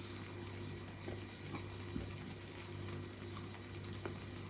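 Quiet room tone: a low steady hum with a few faint clicks.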